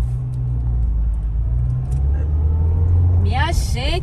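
Car driving, heard from inside the cabin: a steady low engine and road hum. A woman's voice comes in near the end.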